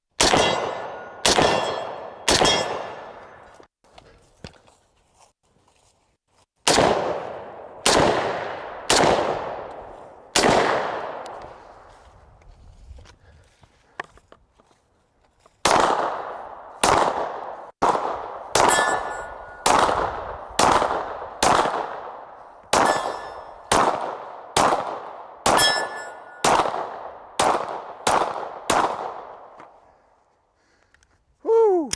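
Seven shots from a Springfield M1A Scout Squad .308 semi-automatic rifle, in a group of three and then a group of four, each ringing out with a long tail. After a pause of about five seconds, about seventeen semi-automatic pistol shots follow at a steady pace of a little under one a second.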